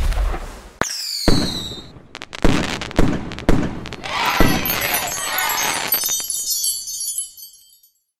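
Firework sound effects: a rocket launching with a rush and a high whistle falling in pitch, then several sharp bangs and high crackling sparkles that fade away.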